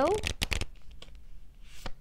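Tarot cards shuffled in the hands: a quick run of flicks and clicks in the first half second or so, then a brief swish and a single snap near the end as a card comes off the deck.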